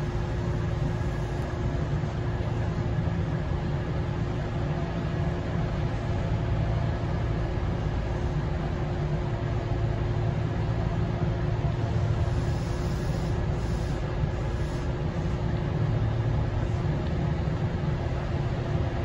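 Kintetsu 1400 series electric train running, heard from inside the front of the car: a steady low rumble from the running gear with a constant hum over it.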